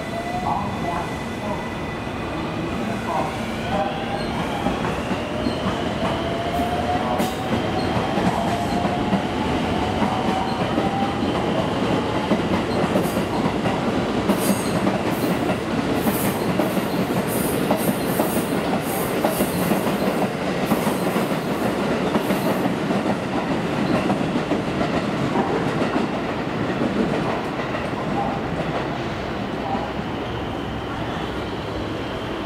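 A JR West 223-series electric train accelerating away: its motor whine steps up and then climbs steadily in pitch, under a steady rumble of wheels on rail. A run of clacks over rail joints follows in the middle, and the rumble eases near the end.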